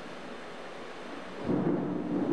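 Steady rain falling, then thunder breaks in suddenly about a second and a half in, a loud low rumble that carries on.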